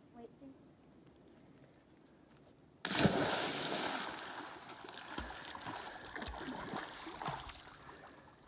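A child jumping into a lake: a sudden loud splash about three seconds in, then water sloshing and splashing as she swims, slowly fading.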